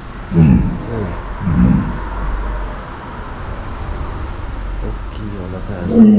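A walrus making two short, low grunts, about half a second and a second and a half in, over a steady low rumble.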